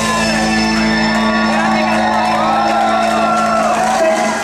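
Live band music holding a long sustained low note at the close of a song, with voices shouting and whooping over it.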